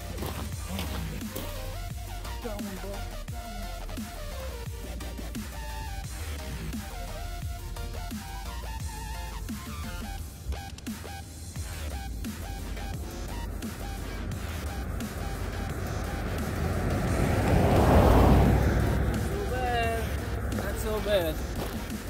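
Background music with a steady bass beat and shifting melodic lines. A loud whooshing swell builds to a peak about three-quarters of the way through, then fades.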